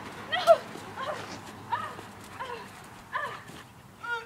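A dog barking in short, repeated barks, about six of them, growing fainter; excited play barking rather than aggression.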